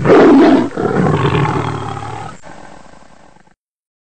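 A loud animal-like roar used as an end-card sound effect: a strong first burst, then a second swell that tails off and stops about three and a half seconds in.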